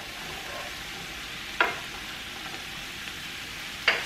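Diced sweet potatoes sizzling in olive oil in a skillet while being stirred with a wooden spoon, a steady hiss. There is a sharp knock about a second and a half in and another just before the end, the wooden spoon striking the pan and the spoon rest.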